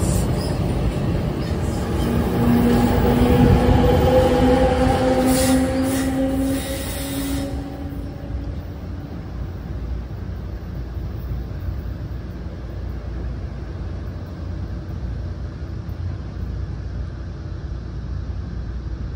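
NJ Transit electric commuter trains passing close through a station: loud wheel-and-rail noise with an electric motor whine that rises slowly in pitch for several seconds. About eight seconds in the sound drops abruptly to a quieter, steady rumble of a train in the distance.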